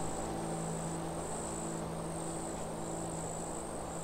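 Crickets chirping in a high trill that breaks off and starts again every second or so, over a low held piano note dying away.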